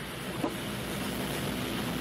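Steady room noise with no speech: an even hiss, like air and microphone noise in a meeting room, with a faint low hum.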